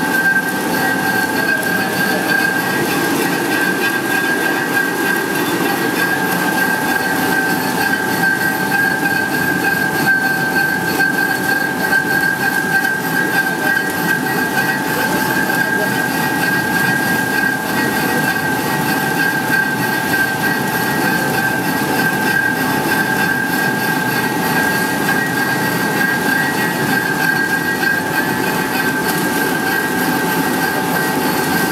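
LFQ film slitting-rewinding machine running at speed, its rollers and winding shafts turning: a steady mechanical running noise with a constant high whine that neither rises nor falls.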